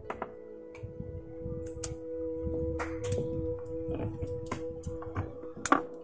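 Scattered sharp clicks and knocks of an XLR cable plug being handled and pushed into the metal body of a handheld microphone. Underneath are two steady sustained tones, the lower of which drops out about five seconds in.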